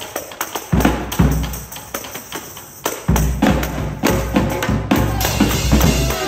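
Tambourine struck and jingled in a rhythmic percussion break, with a marching bass drum hitting heavily a few times underneath.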